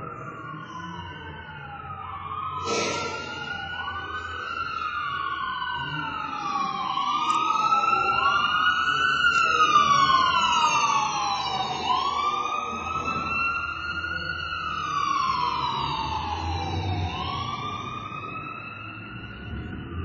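Emergency vehicle sirens wailing, at least two overlapping, each pitch sweeping up and down over a couple of seconds; they swell to their loudest about halfway through, then fade as they pass.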